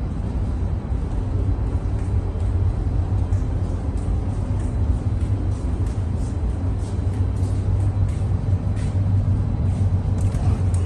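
Steady, loud low hum of a ship's machinery and ventilation heard inside the accommodation corridor, with faint light ticks of footsteps.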